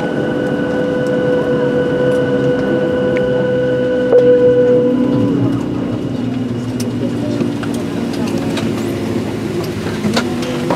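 Inside the cabin of a parked Boeing 737-700: a steady hum with a high whine that slides down in pitch and fades about five seconds in, just after a brief louder bump, as the engines spool down. A lower hum continues, with scattered clicks near the end.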